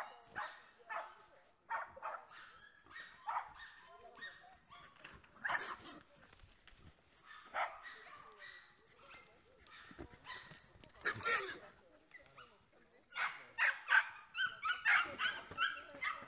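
A small dog barking repeatedly. Single barks come at uneven intervals, then near the end they turn into a fast run of about three barks a second.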